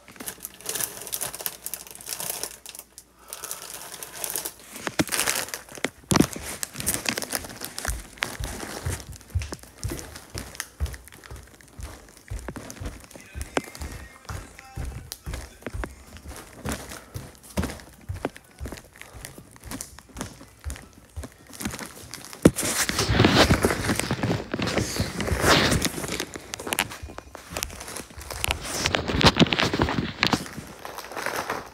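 Rustling and crinkling with many small irregular clicks and taps, growing louder for a few seconds about three-quarters of the way through and again near the end.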